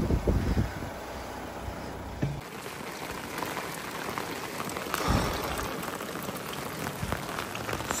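Heavy rain falling, an even hiss with the patter of individual drops. For the first two seconds a low rumble lies under it, then stops suddenly.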